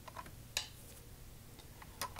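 A few light, sharp clicks over quiet room tone, one louder than the rest about half a second in.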